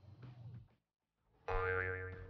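Brief faint sound in the first half second, then an animation sound effect begins about one and a half seconds in: a steady, slightly wavering tone.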